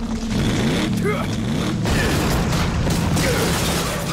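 Cartoon sound effects of robotic mecha-beast vehicles on the move: dense mechanical whirring and clanking over a steady low hum, with sliding whine-like tones in the first couple of seconds.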